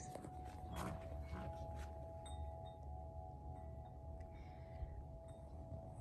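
Quiet outdoor background: a low steady rumble under a faint steady hum, with a few faint clicks early and short high chirps near the middle.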